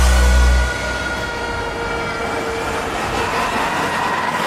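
Hardstyle dance music: a heavy bass kick cuts out about three-quarters of a second in, leaving long held synth tones over a hissing wash as the track breaks down.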